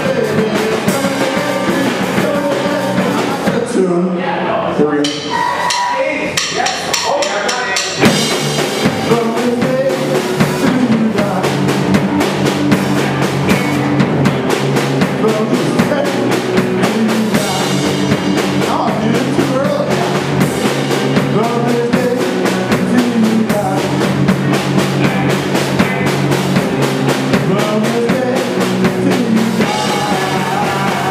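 Live rock band playing loudly: electric guitars, bass and a drum kit, with vocals. From about four to eight seconds in the cymbals drop out, and the full band crashes back in after that.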